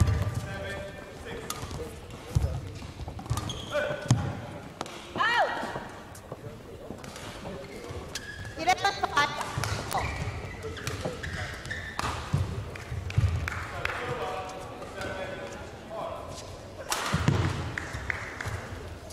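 Badminton players' feet thudding on an indoor court floor, with racket hits on the shuttlecock during the rally in the first seconds, and voices in a reverberant sports hall.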